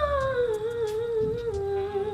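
A woman singing one long note in an opera style, gliding down in pitch about half a second in and then holding the lower note with a slight wobble.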